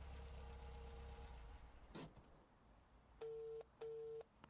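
Telephone ringing tone: two short beeps of one steady pitch close together near the end, a double ring. Before it there is a faint steady hum and a click about two seconds in.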